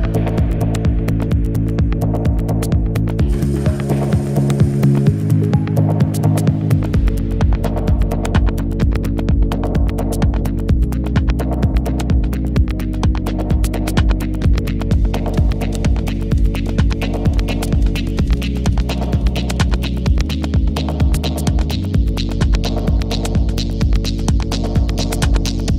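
Minimal techno: a deep, droning bass line with sustained tones under a steady, fast-ticking beat. The lowest bass and kick drop out for a few seconds about four seconds in and come back around seven seconds, with another short dip in the low end near the end.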